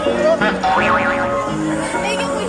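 Music playing loudly, with people's voices over it.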